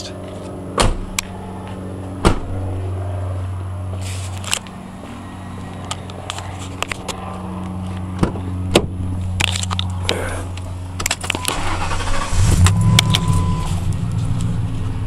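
Sharp clicks of door handling and jangling keys, then near the end the 1997 Ford F-150's 4.6-litre V8 fires and settles into a low idle through its three-inch Flowmaster three-chamber exhaust.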